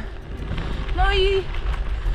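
A woman says a few words over a steady low rumble.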